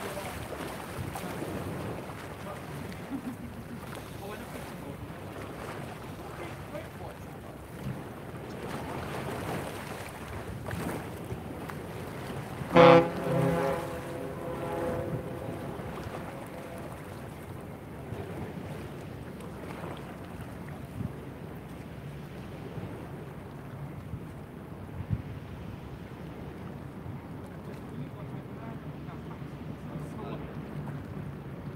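Steady harbourside wind and water noise on an outdoor microphone. About thirteen seconds in comes one loud, brief pitched call or cry of unclear origin, fading over a couple of seconds.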